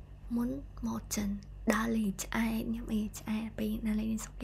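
A woman talking to the camera in a continuous stream of speech.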